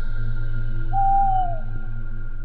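Eerie background music: a steady synth drone with a single hoot-like note about a second in that slides down slightly in pitch.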